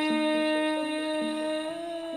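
A sinden's amplified voice holding one long sung note that rises slightly near the end, with softer accompanying notes stepping beneath it.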